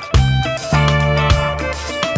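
A band playing live without singing: electric bass and electric guitar over a drum kit, with the drums hitting on a steady beat about every half second.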